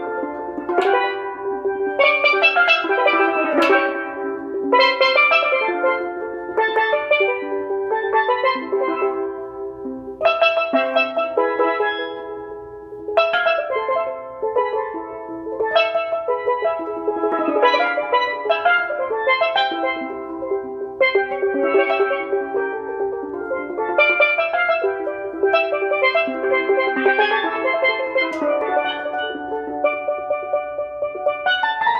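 A solo steelpan played with sticks: a fast melodic run of struck, ringing metallic notes, with a few brief pauses between phrases.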